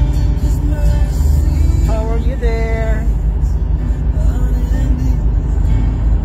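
A car's cabin on the move, with steady low road and engine rumble and music playing over it. A brief voice phrase comes about two seconds in.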